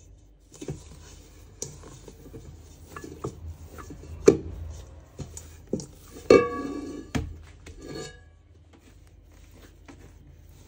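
Stainless steel stand-mixer bowl knocked and scraped as dough is pulled out of it by hand, with several sharp clanks. The loudest clank, about six seconds in, leaves the bowl ringing briefly.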